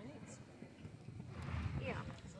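A horse's hoofbeats, dull on the soft dirt footing of an indoor arena, with people's voices talking in the background.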